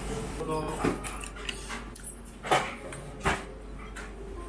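A few sharp clacks of tableware, one of them chopsticks being laid down on a plate, over low chatter in a small restaurant. The loudest clack comes about halfway through.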